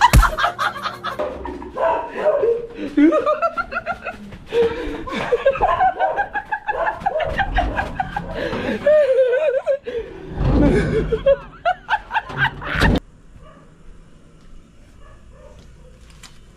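People talking and laughing, the voices stopping abruptly about thirteen seconds in.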